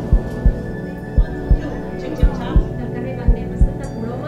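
Heartbeat-like double thump in the soundtrack, four beats about a second apart, over a steady droning hum.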